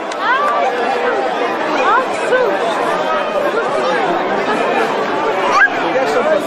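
Several people talking over one another, with a few sharp rising exclamations.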